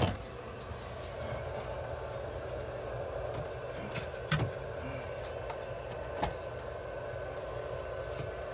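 Steady hum of an incubator's oxygen-therapy equipment running, with a few light knocks, about four and six seconds in, from the wire cage being handled.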